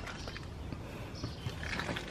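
Low steady rumble with faint rustling and a few light taps: a person shifting about and leaning in at an open car door.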